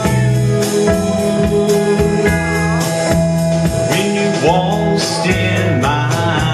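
A man singing a song into a microphone while playing chords on an electric guitar, live and amplified.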